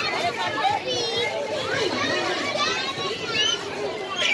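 Several children playing and calling out, their high voices overlapping with no clear words. Two higher, louder calls stand out, about a second in and again near the end.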